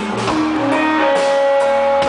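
Live band music with guitar to the fore: held notes over a few sharp percussive strokes.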